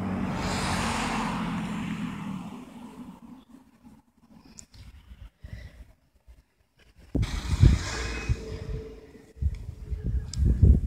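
A car passing by, swelling to its loudest about a second in and fading away by about three seconds. Low rumbling thumps on the microphone follow in the last few seconds.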